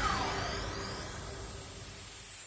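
The fading tail of a short musical transition sting: a falling swoosh dies away in the first half-second, and the rest of the music fades out.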